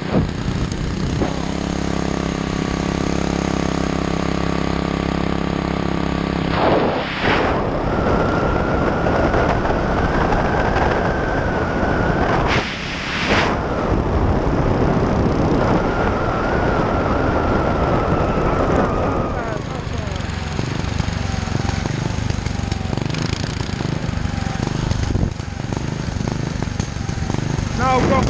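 Small single-cylinder mini bike (go bike) engine running under way, with wind rushing over the microphone of the moving bike. The engine note holds steady for the first several seconds, then gives way to a louder rushing with a thin whine through the middle.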